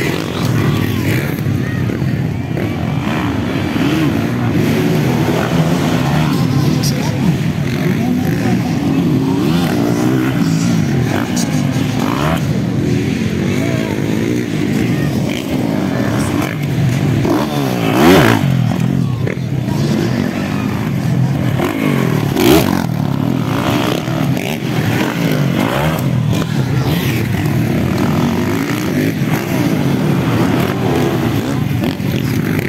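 Motocross dirt bike engines racing on a dirt track, revving up and down as the riders take the jumps, with a loud revving surge about eighteen seconds in.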